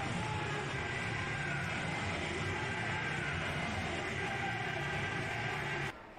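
Steady stadium field audio: an even haze of crowd noise with faint music playing through it. It drops away suddenly just before the end.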